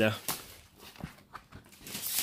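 Faint handling of a plastic document folder as it is picked up and opened, with a few soft clicks near the middle. A man's voice trails off at the very start.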